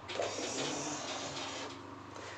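Pencil lead scratching on paper as a line is drawn along a ruler to darken it: a steady scratchy hiss lasting about a second and a half, fading near the end.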